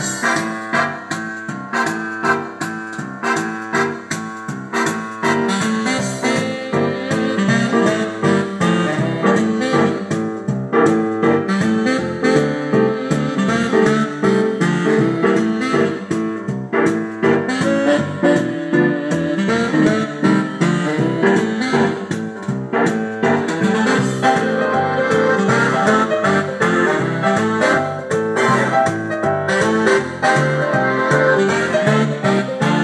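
Yamaha Arius YDP-V240 digital piano playing a boogie-woogie tune in a piano voice through its built-in speakers, steady and fast-moving.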